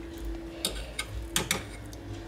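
A handful of light metallic clicks and taps as a metal spoon is picked up and dipped into a stainless steel saucepan, two of them close together a little past halfway, over a faint steady hum.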